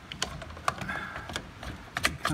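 A few light, separate clicks and knocks of a plastic circuit breaker being handled against the breaker panel as it is fitted into place.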